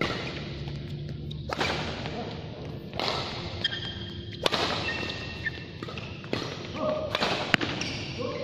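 Badminton rally: rackets striking the shuttlecock with about six sharp cracks, roughly one every second and a half, each echoing in the hall. Short squeaks from players' court shoes on the court mat between the hits.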